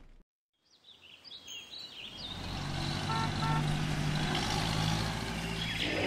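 A moment of silence, then a cartoon jungle soundscape fades in: chirping bird calls over a low steady drone that grows louder.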